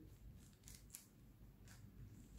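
A few faint, short scrapes of a small spoon spreading pesto over puff pastry on baking paper, against near silence.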